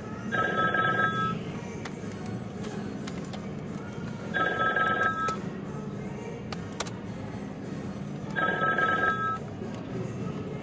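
A telephone ringing with an electronic two-note ring: three rings, each about a second long, spaced about four seconds apart. Faint computer-keyboard key clicks run underneath.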